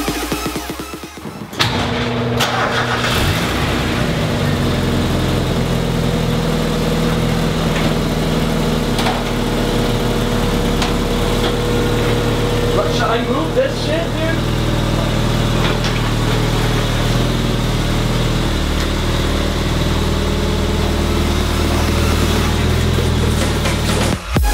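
1992 Mazda Miata's 1.6-litre four-cylinder engine starting about a second and a half in, then idling steadily.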